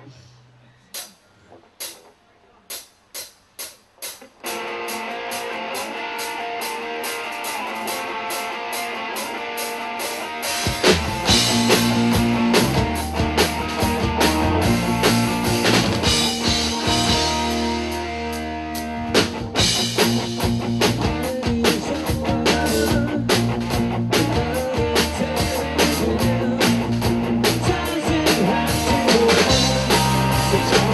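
Live rock band starting a song: a few sharp clicks in the first seconds, then electric guitar comes in about four seconds in, and the full band with bass and drum kit joins about ten seconds in.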